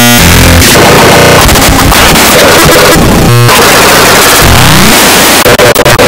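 Extremely loud, heavily distorted electronic noise with music buried in it, clipped at full volume: a harsh cacophony with sweeping pitch glides and a brief stutter about halfway through.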